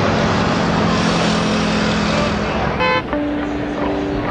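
City street traffic with a vehicle going by, followed by a short car-horn toot about three seconds in.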